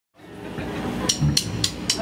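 A rock band's amplified instruments sustaining low notes as the sound fades in. Then come four quick, evenly spaced sharp clicks, a drummer's count-in into the song.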